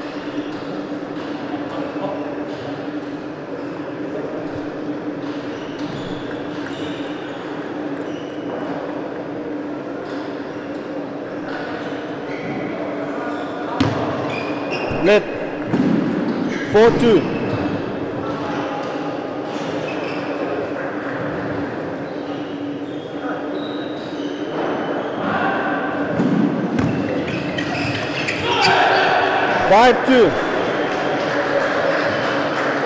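Table tennis doubles play: the light, sharp clicks of the plastic ball struck by bats and bouncing on the table, coming in runs during rallies. Brief voices cut in, loudest about halfway through and again near the end as a point is won.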